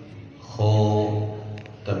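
A man chanting Urdu devotional verse (a manqabat) into a microphone, holding one long, steady note that fades before the next line begins.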